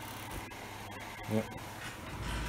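Desktop fan running steadily on the output of a home-built SPWM sine-wave inverter, giving a low, even hum.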